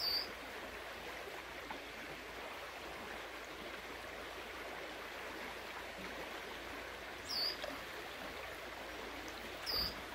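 Shallow creek water running steadily over a riffle, with three short high bird chirps, each falling in pitch: one at the start, one about seven and a half seconds in, and one near the end.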